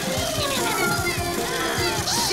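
Cartoon background music with high, squeaky chittering from a swarm of animated moths.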